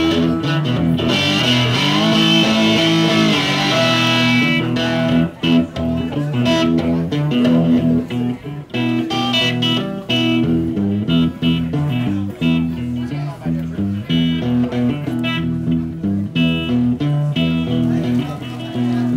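Cigar box guitar in a low open E fifth tuning, its heavy and light strings sounding the same notes, played as a riff of repeated low notes.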